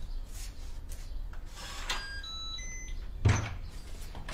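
A door being opened from inside: a brief rustle at the handle, a quick run of short electronic beeps from the door's electronic lock, then a loud clunk as the latch releases and the door swings open near the end.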